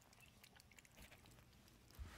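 Very faint chewing and licking of a cat eating chunky wet cat food from a metal bowl, heard as a scatter of soft, irregular ticks.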